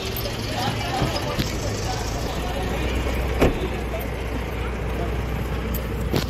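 Getting into an SUV: the door opening and people climbing in, with one sharp knock about three and a half seconds in, like a door shutting, over a steady low hum.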